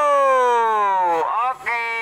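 A person's voice shouting a long held call whose pitch slides slowly downward, breaking off and followed by a second held shout about one and a half seconds in.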